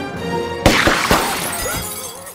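A large window pane shattering as rifle fire hits it: a sudden loud crash about two-thirds of a second in, then about a second of breaking glass with a few thumps, over background music.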